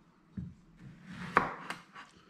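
Kitchen knife cutting through a long marrow (qara twila) on a wooden chopping board: a soft thump about half a second in, then a sharp knock of the blade striking the board near the middle and a lighter one just after.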